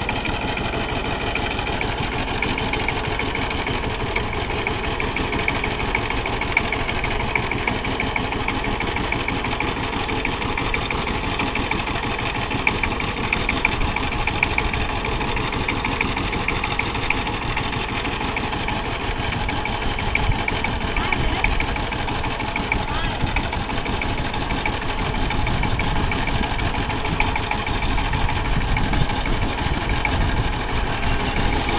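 Power tiller's single-cylinder diesel engine running steadily with a fast even chugging as the machine drives along the road, growing a little louder near the end as it comes closer.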